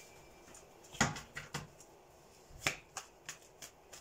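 A series of short, sharp clicks made by hands at a desk: three close together about a second in, then four more in the last half.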